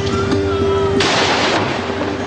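Background music with a plucked guitar, broken about a second in by a sudden burst of gunfire lasting about half a second, a ceremonial volley fired at a military funeral.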